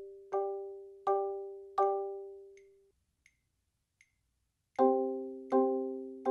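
Marimba played with four mallets in double vertical strokes: two-note chords in both hands struck together about every three-quarters of a second, in time with a metronome at 80 beats a minute, each chord ringing and dying away. The chords stop a little after two seconds, leaving only the metronome's faint clicks, and a new, lower-pitched series of chords starts near the end.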